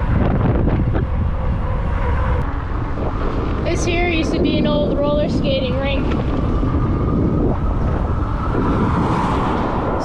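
Wind buffeting the microphone of a handlebar camera on a moving e-bike, with tyre noise on asphalt and a faint steady tone. A short run of pitched sounds that bend and break comes in around four to six seconds in.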